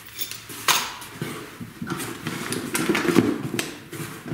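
Parts being handled and rummaged through in a cardboard box: a run of sharp clicks and knocks with rattling and rustling, busiest around the middle to later part.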